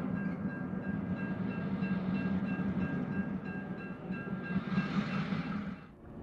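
Railroad freight cars and diesel locomotive moving through a yard: a steady low rumble with a faint, steady high-pitched tone over it, fading just before the end.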